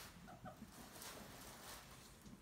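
Faint soft clucking chirps from a guinea pig, two short ones about a third and half a second in, over near-silent room tone.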